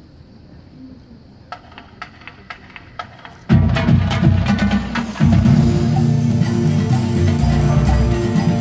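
A count-off of sharp, evenly spaced clicks, about two a second, then a full marching band of brass and percussion coming in loudly at the chorus, with a brief drop just before a second loud entry.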